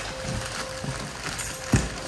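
Clear plastic wrapping on a boxed loudspeaker rustling and crackling in small irregular bursts as a hand handles it. There is a single thump near the end.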